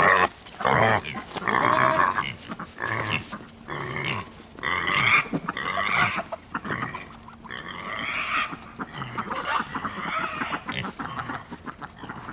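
Kunekune pigs vocalizing close to the microphone in a series of short calls at irregular intervals.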